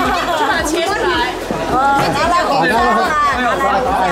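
Speech only: several people chatting.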